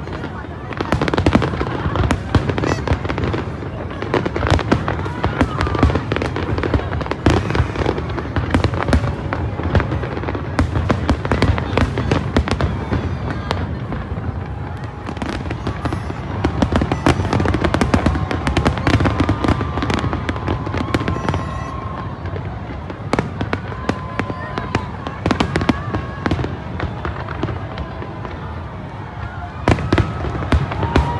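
Fireworks display: a dense, continuous barrage of shell bursts, many bangs a second with crackle between them, and voices in the watching crowd beneath.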